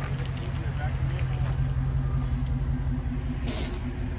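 A car engine running at a low, steady idle, with a short hiss about three and a half seconds in.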